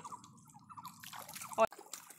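Water dripping and trickling off a bamboo fish-scoop basket lifted out of shallow muddy water, with small faint ticks and one short sharp sound about a second and a half in.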